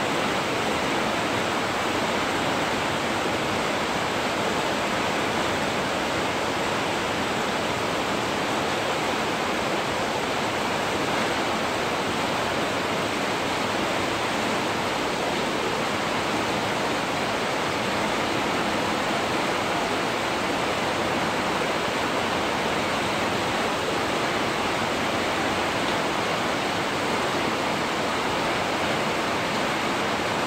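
Heavy rain falling steadily, an even, unbroken hiss that holds the same level throughout.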